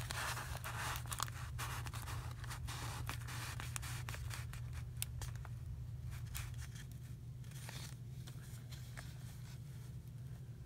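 Paper and card rustling and scraping as journal pieces are handled and tucked into place. It is busy with small clicks and scrapes for the first five seconds or so, then fainter.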